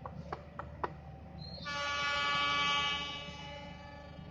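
Train horn sounding once, a steady tone held for about a second and a half, starting a little under two seconds in. It is preceded by a brief high-pitched tone and a few light clicks.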